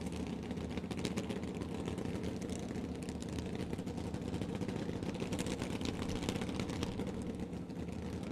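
Injected nitromethane funny car V8 idling steadily at the starting line, a low, even running sound.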